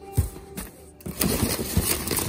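Crumpled kraft packing paper rustling and crinkling as it is handled in a cardboard box, with a single tap near the start and louder, dense crinkling from about a second in.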